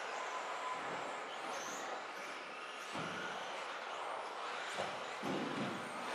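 Radio-control 2WD racing buggies running laps on an indoor carpet track: a steady, fairly faint mix of electric motor whine and tyre noise carried through the hall, with the odd brief tone from a car passing.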